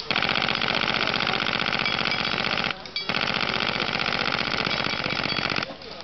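Airsoft AK74U with a pressed-steel body and a full-solenoid F-1 unit firing full-auto: a fast, even rattle of shots in two long bursts of about two and a half seconds each, with a brief break in the middle. The cycle rate is what the owner calls right for its low-grade Chinese magazine.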